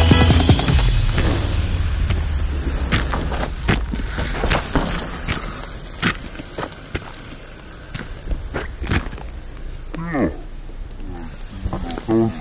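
Music cuts off about a second in, leaving outdoor street ambience with scattered short clicks and knocks; a voice comes in near the end.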